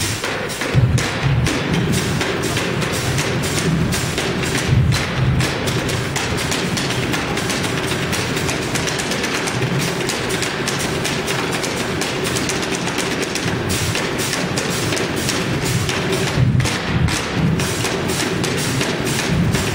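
Fast percussion played on a refrigerator: sticks, utensils and hands striking its doors, shelves and body in a steady run of quick clicking hits over heavier low thumps.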